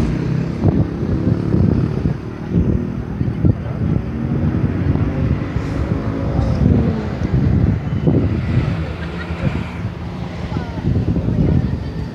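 Many people talking at once, an indistinct babble of overlapping voices, with wind rumbling on the microphone.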